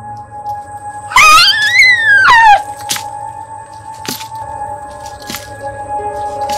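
Film score with a steady held drone. About a second in, a loud pitched sound rises and then falls away over about a second and a half, followed by a few sharp cracks.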